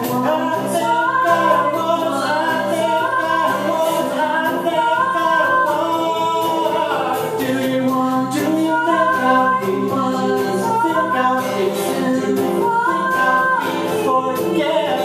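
A folk-rock song played acoustically: a woman and a man sing together in two-part harmony over a fingerpicked or strummed acoustic guitar.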